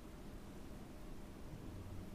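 Faint steady hiss and low hum: quiet room tone.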